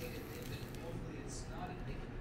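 Faint, indistinct background voices over a low steady hum, with a soft crunch of a crusty sandwich roll being bitten about one and a half seconds in.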